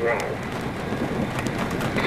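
A steady, even hiss of background noise with no distinct events, in a brief pause between voices.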